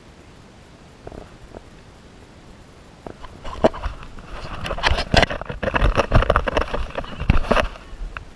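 Handling noise on the camera as it is picked up and moved: a run of rubbing, scraping and knocking with a low rumble, starting about three seconds in, after two faint knocks about a second in.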